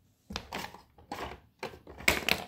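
Quiet at first, then from about a third of a second in a run of short rustles and bumps from handling the phone and moving against fabric and plush toys, with dull low thuds.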